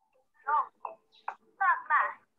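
A woman's high voice speaking in short bursts, coming through a video call's audio.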